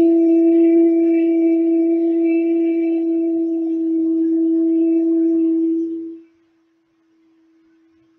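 A woman's voice holding one steady, unwavering note for about six seconds, then breaking off abruptly. A faint tone lingers on after it.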